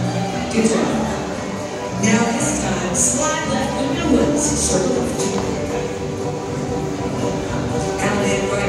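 Live contra dance band playing a dance tune, with voices talking over it.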